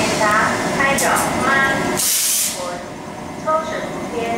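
General Electric E42C electric locomotive and its passenger coaches moving slowly along a station platform, with a short hiss of air from the train about two seconds in.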